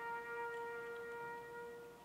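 Solo trumpet holding one long final note, which slowly fades and stops near the end.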